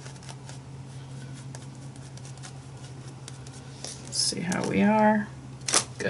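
Soft, faint taps of a foam sponge dabbing black paint through a face stencil onto a paper journal page, over a steady low hum. About four seconds in, a woman's voice sounds briefly, and a sharper tap comes near the end.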